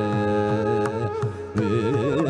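Male Carnatic vocalist singing in raga Todi: a long, steady held note for about the first second, a brief break, then quickly oscillating, ornamented phrases starting again near the end.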